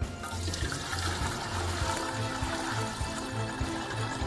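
A steady stream of water pouring into a large metal cooking pot that already holds some water, splashing and rushing into the water already there. Background music plays underneath.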